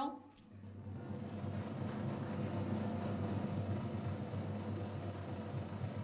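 A crowd's improvised drum roll: many people drumming rapidly. It builds up about half a second in and holds at a steady level throughout.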